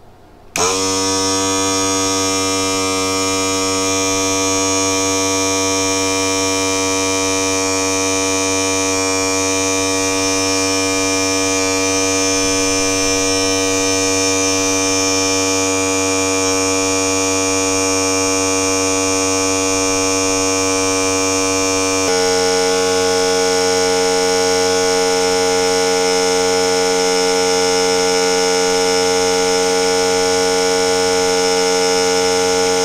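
Small electric nebulizer air compressor switching on and running with a steady buzzing hum, pumping air into a condom fitted over its hose. Its tone changes abruptly about two-thirds of the way through as the condom fills.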